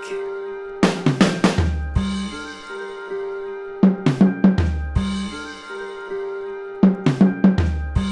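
A programmed beat playing back, with sampled acoustic drums from the Reason Drum Kits rack extension. Kick, snare and cymbal hits come in quick clusters about every three seconds, over held pitched notes and a deep bass note after each cluster.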